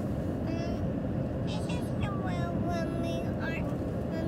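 Voices talking indistinctly inside a car cabin, over the steady low rumble of the stationary car.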